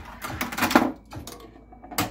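Steel pinball clattering down a Williams Whirlwind playfield, a quick run of clicks and clacks off posts and rubbers, loudest about three-quarters of a second in. Fainter ticks follow as it rolls through the left return lane, tripping the switch under test.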